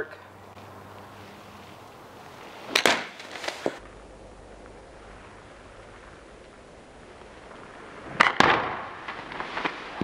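Golf iron striking a ball off a hitting mat on a slow practice swing: two sharp clicks close together about eight seconds in. There is an earlier single sharp knock about three seconds in.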